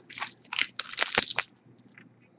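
Foil trading-card pack wrapper crinkling in a quick run of rustles as fingers handle and tear it open, stopping about one and a half seconds in.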